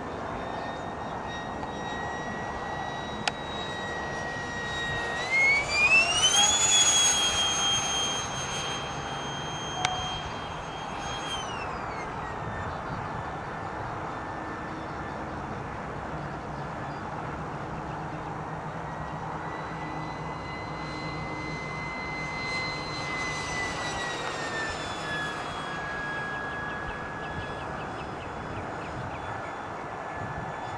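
Electric ducted fan of a HABU 32 RC jet (Tamjets TJ80SE fan on a Neu 1509 2Y motor) whining in flight. The whine climbs sharply in pitch about five seconds in, holds high at its loudest for several seconds, then drops back near twelve seconds. A smaller rise and fall comes later.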